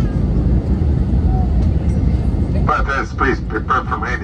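Steady low rumble of airliner cabin noise inside an Airbus A321neo descending towards landing. A person's voice talks briefly over it near the end.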